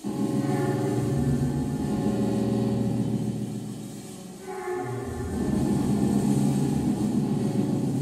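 Live experimental noise music: a loud, dense rumbling drone of layered electronic tones that starts abruptly, sags briefly just past the middle, then swells back up.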